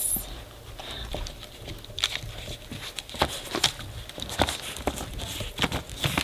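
Puppy shifting about on newspaper in a crate and mouthing a rubber chew toy: scattered soft clicks and paper rustles.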